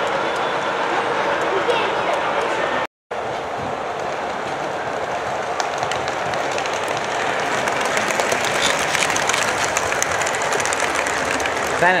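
O-scale model trains rolling over the layout's track: a steady rumble and clatter of wheels under the chatter of a crowd in the hall. A sudden brief gap breaks the sound about three seconds in.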